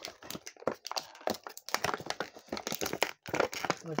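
Thin clear plastic packaging crinkling and crackling in quick, irregular clicks as it is handled to get the action figure out.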